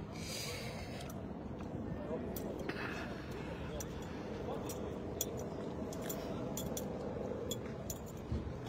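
Footsteps walking on dry, sandy dirt, with short crunches and small clinks about twice a second. Under them is a steady outdoor background hiss.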